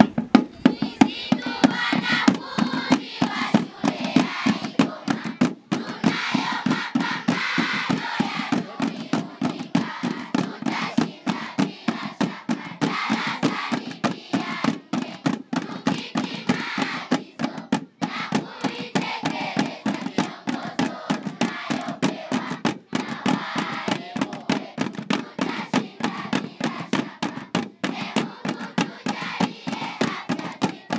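A school drum band playing snare drums in a rapid, steady beat, with children's voices singing over the drumming at times.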